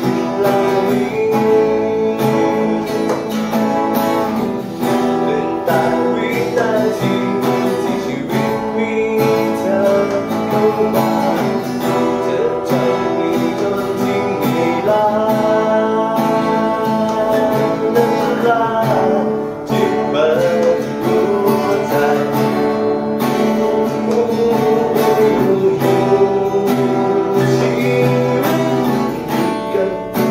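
Cutaway acoustic guitar strummed in steady chords, playing through a song.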